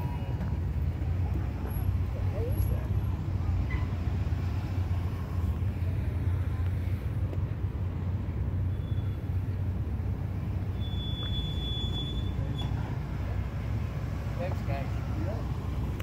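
Steady low outdoor rumble of street traffic, with faint distant voices now and then.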